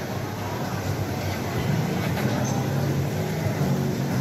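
A small electric ride-on children's train rolling along its track, heard over the steady hubbub of a busy shopping mall.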